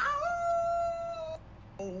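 A person howling like a wolf: one long, steady howl that rises briefly at the start, holds for about a second and a half, and stops abruptly.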